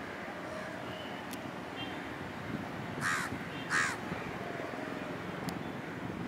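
Two harsh crow caws in quick succession, about three seconds in, over steady background noise.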